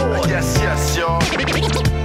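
Hip-hop beat with turntable scratching: a record worked back and forth under the needle, making quick sliding pitch sweeps over a steady bass and drum loop.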